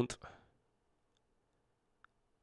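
The tail of a man's word spoken close into a microphone, with a short click, then near silence for the rest.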